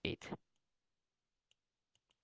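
A few faint, short clicks, about one and a half and two seconds in, from a pointing device writing on a digital whiteboard, over near-silent room tone.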